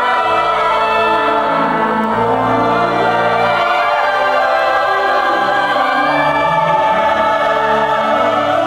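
Mixed choir of men's and women's voices singing in sustained, held notes.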